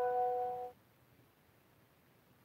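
A bell-like chime ringing out and fading away, dying off under a second in, then near silence.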